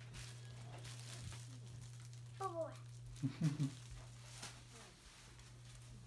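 Faint, indistinct voices over a steady low hum: a short call falling in pitch about two and a half seconds in, then a few muffled syllables.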